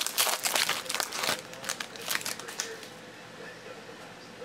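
Foil trading-card pack wrapper crinkling as it is pulled open and the cards are slid out. It is busiest for the first two and a half seconds, then goes quieter.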